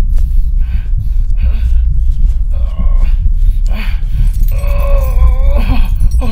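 A deep, steady rumble under a person's wordless groans and moans, which come and go several times and are longest near the end.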